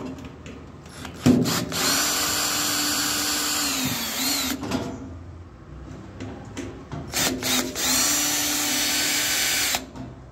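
Cordless drill-driver backing out the screws of a gas boiler's front casing. Its motor runs steadily in two long runs of a few seconds each, with a few short blips of the trigger just before the second.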